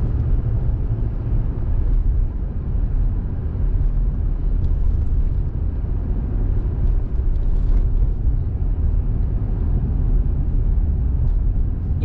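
Steady low rumble of a car driving at low speed, the mix of engine and tyre-on-road noise heard from inside the cabin.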